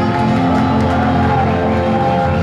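Loud, steady pop music played on stage, with sustained keyboard chords.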